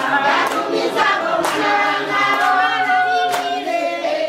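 A group of voices singing together, with a hand clap about once a second.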